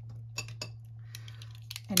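A few light clicks and taps from handling a red plastic snap-off utility knife and the book, with a brief soft rustle a little past the middle. A steady low hum runs underneath.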